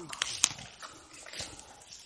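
Rustling of leaves and undergrowth brushing against the camera, with a few sharp twig-like clicks, the strongest about half a second in.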